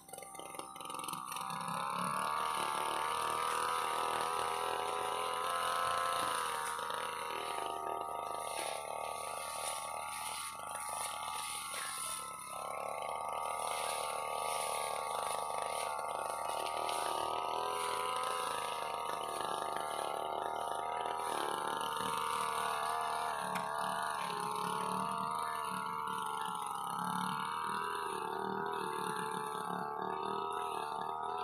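Brush cutter engine coming up to speed over the first couple of seconds and then running hard and steadily while cutting grass and weeds. Its pitch wavers under load and drops briefly about twelve seconds in.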